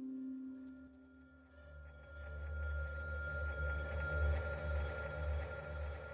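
Film score: a soft sustained tone dies away in the first second, then a low pulsing drone with steady high ringing tones swells up from about two seconds in, building suspense.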